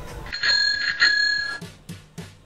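A bell rings twice, two bright strikes about half a second apart that ring on and fade out.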